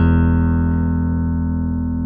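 Five-string Jazz-style electric bass with Alnico single-coil pickups, its last struck notes left to ring and slowly fade away.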